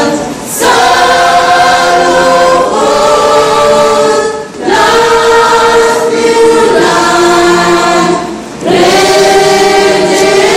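A choir of children singing without accompaniment, long held notes in phrases about four seconds long, each broken by a short pause.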